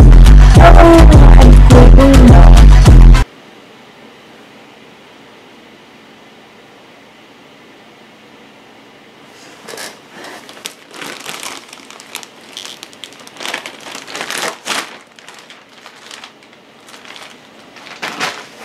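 Music with a heavy beat and vocals that cuts off suddenly about three seconds in, leaving quiet room tone. From about halfway on, crinkling and rustling of packaging as a shipping box and its bag are handled.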